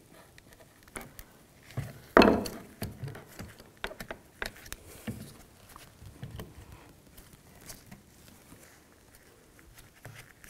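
Rubber mounts being worked by hand into the plastic housing of a car's electric secondary air pump: scattered small clicks, taps and rubbing. The loudest handling noise comes about two seconds in.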